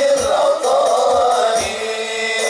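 Sholawat devotional singing by a group of men, a long melodic chant carried over deep frame-drum beats about twice a second.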